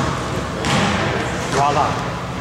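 Players talking and calling to each other in an echoing gymnasium, with a short shout about a second and a half in.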